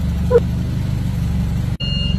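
Forklift engine running steadily, broken by a short gap near the end.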